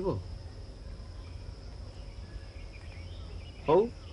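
A pause in conversation, filled by a steady low background hum and hiss with a faint high-pitched tone. A voice trails off at the start and a short spoken 'haan' comes near the end.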